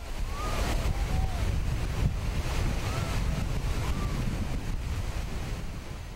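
Whitewater river rapids rushing, a steady dense noise of churning water as a raft goes through.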